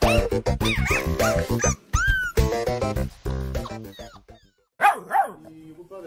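Upbeat background music for about four seconds, then a puppy gives two short yips about half a second apart near the end.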